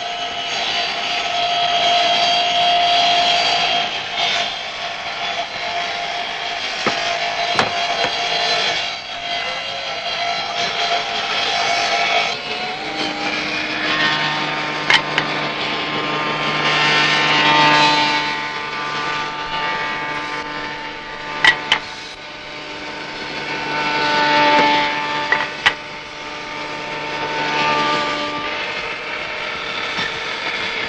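A bench woodworking machine running with a steady motor whine that changes pitch partway through and swells louder twice as wood is worked on it, with a few sharp wooden knocks.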